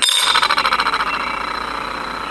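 A bare metal spoon lure clinks down onto a glass-topped kitchen scale and rocks on its curved back, giving a ringing rattle that starts sharply and slowly dies away.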